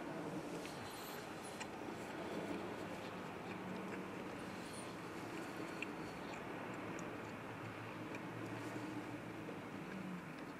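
Quiet chewing of a mouthful of bacon, egg and cheese burrito, with a few faint soft mouth clicks, over a steady low hum inside a car cabin.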